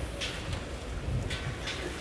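Outdoor background ambience: a low, uneven rumble with a few faint, soft short sounds.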